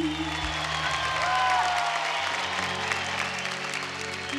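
Studio audience applauding over sustained background music, low held chords.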